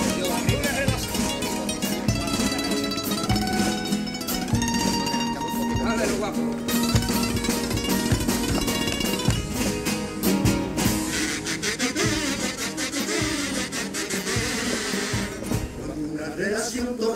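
Spanish acoustic guitars of a carnival comparsa playing the instrumental introduction to a pasodoble, with frequent sharp percussive strikes. Near the end a rushing, hissing noise joins the music for a few seconds.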